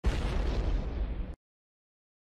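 A sudden boom-like results-reveal sound effect, heavy in the low end with a rushing noise tail, that cuts off abruptly after about a second and a half.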